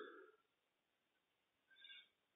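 Near silence: faint room tone, with the echo of the last spoken word dying away at the very start.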